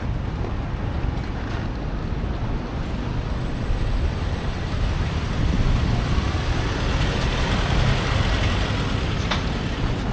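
Wind buffeting the microphone, a steady rumbling noise, with traffic in the background.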